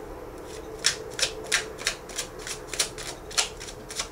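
Tarot cards being shuffled by hand: a run of quick, even brushing strokes, about three a second, starting about a second in.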